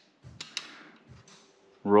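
A few faint, light metallic clicks and handling noise about half a second in, from a dial bore gauge being rocked back and forth inside an engine's main bearing bore.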